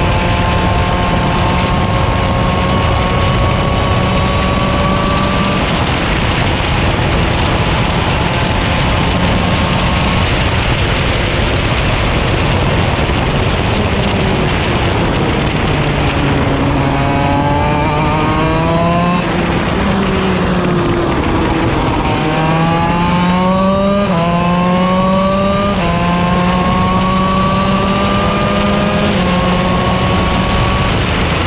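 125cc KZ shifter kart's two-stroke engine at racing speed, heard from on board. The revs climb slowly, fall twice as the kart slows for corners, then climb again in steps, with a quick drop in pitch at each upshift.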